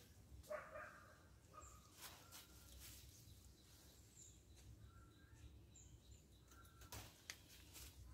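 Near silence: faint outdoor ambience with a few soft rustles and brief, faint bird chirps.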